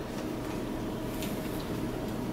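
Brother XR1300 computerized sewing machine running at a low, steady speed while stitching stretchy black spandex.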